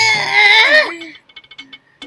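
A woman's high, whining cry that wavers up and down in pitch for about a second, then fades into a few faint, quick clicks.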